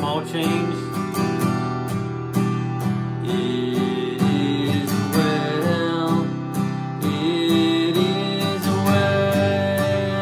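Steel-string acoustic guitar strummed in a steady rhythm of about three strokes a second, moving through C, D and E minor chords in the key of G without a capo.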